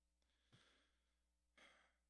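Near silence with a man's faint breathing into a microphone, a short breath about a second and a half in.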